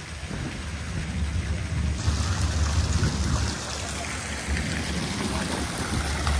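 Fountain water splashing steadily into its basin, a hissing rain-like patter that grows brighter about two seconds in, over a low, uneven rumble.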